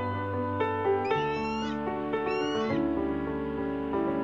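Slow piano music, with two short, high, wavering calls over it, each about half a second long and about a second apart.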